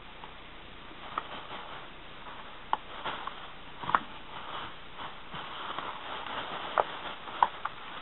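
Thin plastic bag rustling and crinkling as a plastic tub is slipped into it, with a few short sharp crackles.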